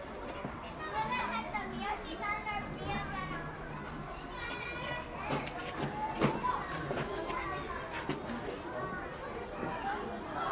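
Children's voices chattering and calling out among a crowd of visitors, with a few short sharp knocks through the middle.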